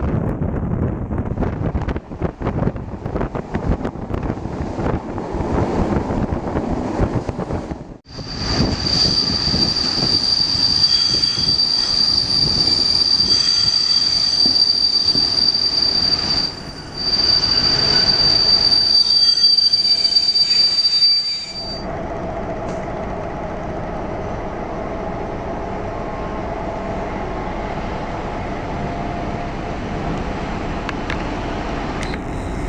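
Passenger train heard from a carriage window behind a class 754 diesel locomotive. The train runs with a rumble and clatter of wheels on track. From about 8 s in, the wheels give a loud, steady, high-pitched squeal on the curve, with a brief dip in the middle. The squeal cuts off sharply a few seconds past the midpoint, and quieter, even running noise follows.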